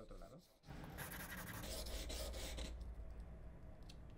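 Chip carving knife blade sliding on wet 800-grit sandpaper backed by a glass tile: a faint, steady scraping rub that starts about half a second in and fades near the end.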